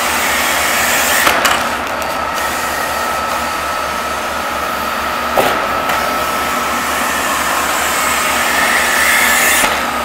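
VacuHand Pro Crane vacuum tube lifter running, a steady rushing hiss of suction air with a faint steady whine. A short thud comes about halfway through, as a 55-pound bag is set down, and the hiss swells near the end as the suction foot is lowered onto the next bag.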